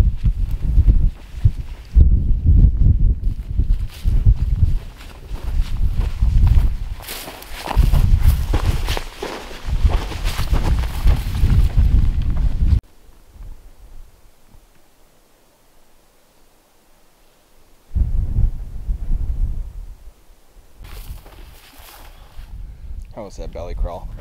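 Footsteps through dry prairie grass during a stalk, with wind buffeting the microphone in irregular low rumbling gusts. About 13 seconds in, it drops suddenly to a faint hush for about five seconds, then the gusts return briefly.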